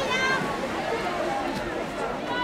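A high-pitched raised voice calls out briefly at the start, over a steady outdoor background noise; a fainter voice comes in near the end.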